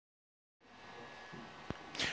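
Near silence: dead silence for the first half second, then faint room hiss, with a single small click late on.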